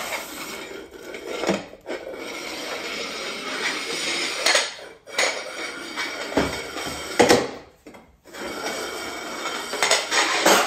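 A food dish being pushed across a tiled floor by a puppy's nose: continuous scraping and clattering in stretches with short breaks, and a few sharp knocks, the loudest a little after halfway.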